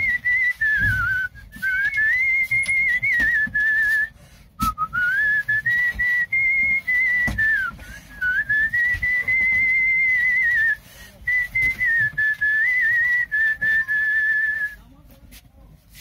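A man whistling a tune by mouth: one clear, high, pure line that moves up and down in melodic phrases separated by short breaths, stopping near the end.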